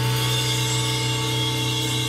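A band's final chord held and sustained: a steady low note with steady higher tones over it, ringing on from electric guitar and keyboard after a last hit just before.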